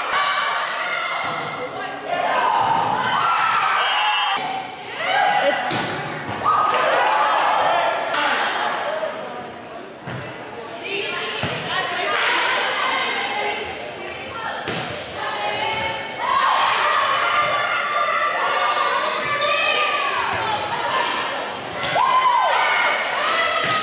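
Volleyball being hit back and forth in a gym, a series of sharp smacks spread through the rally, with players and spectators shouting and calling over it, all echoing in a large hall.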